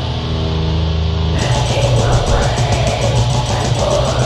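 Heavy metal played by a band with no vocals: a distorted electric guitar chord is held, then about a second and a half in the drums and guitars come in together with a fast beat.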